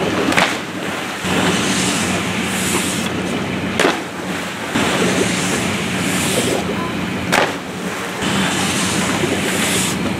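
Steady rushing water noise with a constant low hum, broken by short sharp sounds about half a second, four seconds and seven and a half seconds in.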